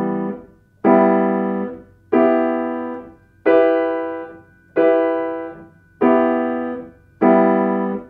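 Yamaha grand piano playing blocked triads through their inversions: a steady series of chords, one about every 1.3 seconds, each held about a second and then released.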